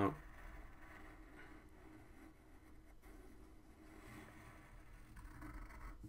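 Faint scratching of a graphite pencil on paper as lines are drawn.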